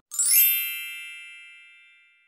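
A sparkle chime sound effect: a quick downward run of bright, bell-like tones that rings on and fades away over about two seconds.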